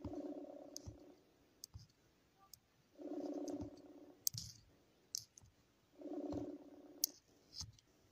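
Telephone call ringing tone: three rings about a second long, each starting three seconds after the last, with faint clicks between them.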